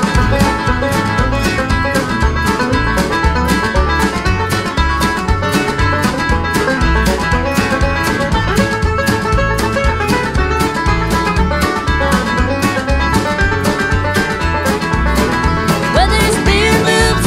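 Country band playing an instrumental break with no vocals: plucked strings carry the tune over a steady drum beat.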